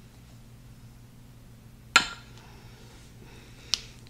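A kitchen utensil strikes a glass mixing bowl with a sharp, ringing clink about halfway through, then gives a lighter tick near the end, as powdered sugar is added to a peanut butter mixture.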